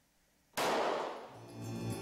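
Film soundtrack opening: a sudden loud impact hit about half a second in, dying away over most of a second, then music coming in with a deep, sustained bass note.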